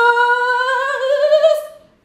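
A woman's voice holding one long sung 'ooo' note that slowly rises in pitch, wavering slightly before it cuts off near the end, voiced as a mock magic-spell sound.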